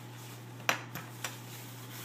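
Light clicks and taps as a silnylon bear bag is pulled out and handled on a stone countertop: one sharp click under a second in, then two fainter ones, over a steady low hum.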